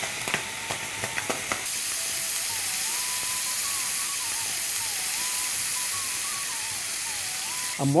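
Tomato pieces frying in oil in a pan, a steady sizzling hiss that sets in about two seconds in, after a few light clicks. A faint simple tune steps up and down underneath.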